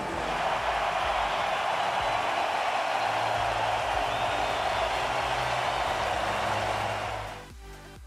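Hockey arena crowd cheering in a loud, steady roar over background music; the cheering cuts off suddenly near the end, leaving the music with a steady beat.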